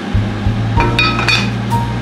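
A pot lid set down onto a casserole pot with a clink and a short ring about a second in, over background music with a steady bass line.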